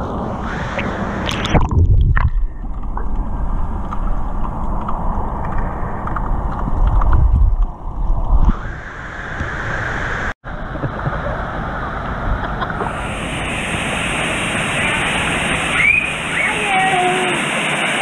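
Water sloshing and gurgling around a waterproof action camera held at the surface of a swimming pool, muffled and deep while the camera is under the water from about two to eight seconds in, brighter once it is back above the surface.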